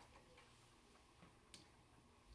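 Near silence: faint room tone with a few soft ticks and one sharp click about one and a half seconds in, a computer mouse click turning to the next page.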